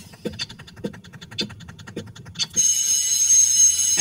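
Steady rhythmic ticking, several ticks a second with a stronger one about every half second, then about two and a half seconds in a loud, sustained high-pitched electronic tone.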